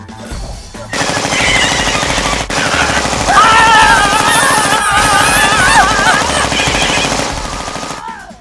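A long rapid-fire rattle like machine-gun fire, laid on as a comic sound effect, starting about a second in and stopping near the end. Over its middle a woman's long, wavering yell is heard.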